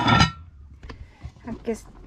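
A woman's voice trails off, then come a few light clinks and knocks of metal cooking-pot lids: one set back on a pot, another lifted off.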